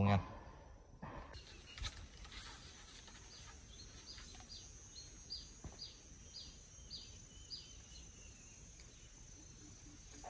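A bird calling a run of about ten short, falling high notes, two to three a second, over a faint steady high insect drone in quiet rural ambience.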